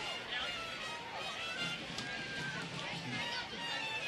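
Faint football-field ambience: distant voices, with faint music underneath.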